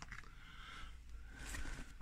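Faint rustling and scraping of hands and camera brushing against a fabric curtain, with one slightly sharper scrape about one and a half seconds in.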